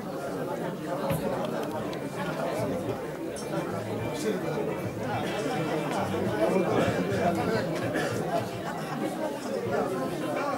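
Many people talking at once in a large room: a steady hubbub of overlapping conversation and laughter-free chatter with no single voice standing out.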